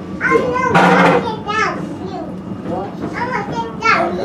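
Children's voices chattering and calling out without clear words, with a loud shout about a second in, over a steady low hum inside the incline railway car.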